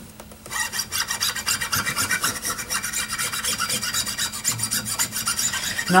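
Cotton rag wetted with alcohol being rubbed quickly back and forth along the steel strings of an acoustic guitar to clean grime off them: a continuous scratchy rasp that starts about half a second in.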